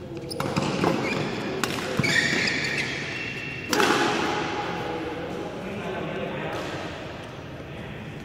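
Badminton rally: several sharp racket hits on the shuttlecock, the loudest a little before halfway, each ringing on in the big hall.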